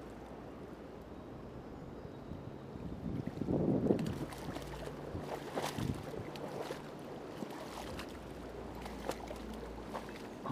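River current rushing over the shallows with wind on the microphone, a louder splashing burst about three to four seconds in, then scattered small clicks and rustles in the weeds as a fish is landed.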